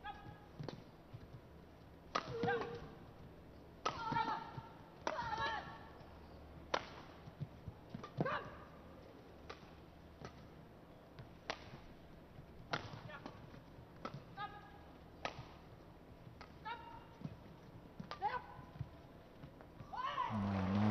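Badminton rally: rackets striking the shuttlecock in sharp clicks at irregular intervals of roughly a second, back and forth across the court, with short high squeaks between the hits.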